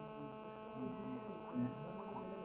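Steady electrical mains hum, a few even tones held without change, with faint low sounds underneath and a small swell about one and a half seconds in.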